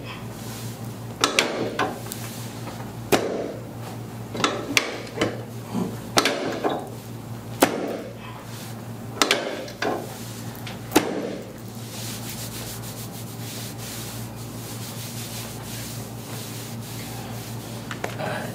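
A chiropractor's hands pressing and rubbing on a patient's back over her shirt as she lies face down on the adjusting table. There are about ten sharp clicks over the first eleven seconds, then only a quiet steady hiss.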